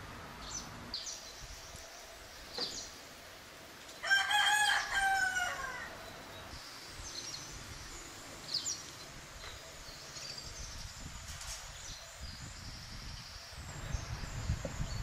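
A rooster crows once, a call of about two seconds that holds and then falls at the end, with small birds chirping briefly around it.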